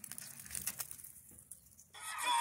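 Faint, scattered crunching and crackling of a squirrel biting into an in-shell peanut, a few separate small cracks.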